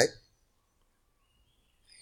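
Near silence, with a man's speech trailing off at the very start and starting again at the very end.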